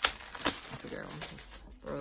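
Paper folders and their plastic wrapper being handled: two sharp taps about half a second apart, then faint rustling. Speech starts near the end.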